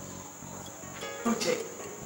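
A steady high-pitched trill running throughout, of the kind insects such as crickets make, with a brief low murmur of a voice a little over a second in.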